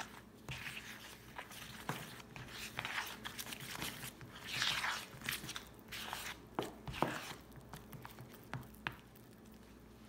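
Metal spoon stirring a thick flour-and-water paste in a plastic bowl: irregular scrapes and clicks of the spoon on the bowl with wet squishing, stopping about a second before the end.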